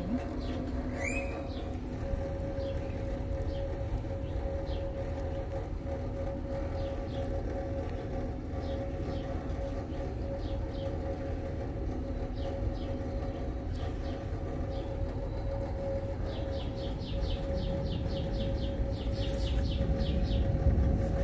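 A steady hum with one constant, unchanging tone over a low rumble, with birds chirping now and then and a quick run of rapid chirps near the end.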